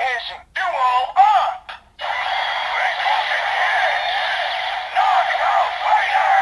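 DX Gashat Gear Dual toy from Kamen Rider Ex-Aid playing its Knock Out Fighter sounds through its small, tinny speaker: a few short electronic voice calls in the first two seconds, then a continuous game-style music loop with a shouted voice call near the end.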